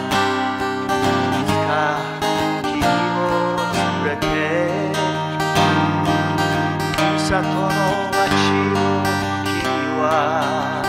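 A man singing a Japanese folk ballad, accompanying himself on a Washburn Rover steel-string travel guitar.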